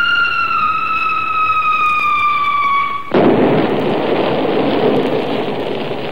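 An aerial bomb's falling whistle, one tone sliding slowly down in pitch for about three seconds, cut off by a loud explosion whose noise dies away slowly over the last few seconds.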